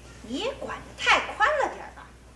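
A person's voice making wordless vocal sounds, about three swooping calls whose pitch rises and falls, the loudest about a second in.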